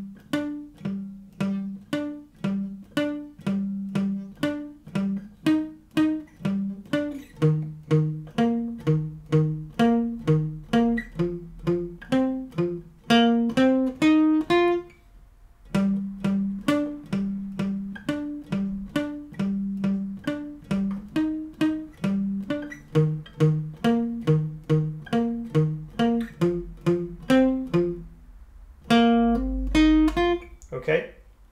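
Steel-string acoustic guitar playing a palm-muted, single-note picked riff slowly, about two notes a second, each note dying away quickly. Each phrase climbs higher near its end, and the riff stops briefly about halfway through before starting again.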